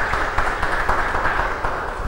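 Audience applauding, a short round of clapping that dies away near the end.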